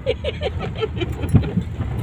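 Road noise inside a moving car's cabin: a steady low rumble from the car driving. There is a short run of brief voice sounds in the first second, and light clicks and rattles.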